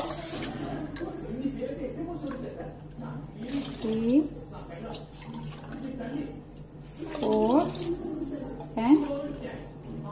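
Water poured from a steel tumbler into an aluminium pressure cooker of rice, one cupful after another, as the water is measured in for cooking. A woman's voice speaks briefly over it several times.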